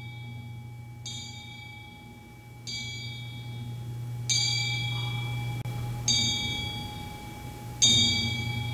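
A metal ritual bell of a Buddhist service is struck five times at a slow, even pace, about one strike every 1.7 seconds. Each strike rings on with bright, lingering overtones, and the later strikes are louder. A low, continuous rumble sounds under the strikes.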